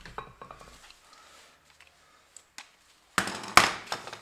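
Light metallic clicks from a cordless impact wrench and its socket being handled. About three seconds in comes a short, loud metal clatter lasting under a second, with one sharp hit in it.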